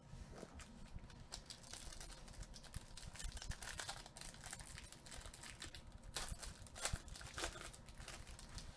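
Plastic trading-card pack wrapper crinkling irregularly as gloved hands open it and handle the cards.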